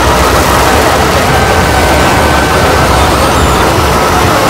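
Harsh noise music: a loud, unbroken wall of dense noise with a heavy low rumble and thin wavering whistles running through it.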